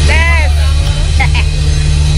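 Loud, bass-heavy music whose low end swamps the phone's microphone, its bass note shifting about a second in. Over it, a close voice gives a drawn-out rising-and-falling shout at the start, and a shorter call follows about a second later.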